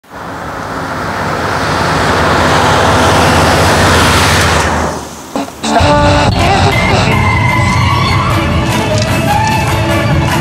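A car approaching and passing on a road, its road noise swelling over the first few seconds and then cutting away about halfway through. Just before the middle, music with a regular light beat starts and plays on.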